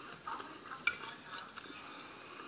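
Faint close-up chewing and mouth sounds of a person eating cornbread and black-eyed peas, with one sharp click about a second in.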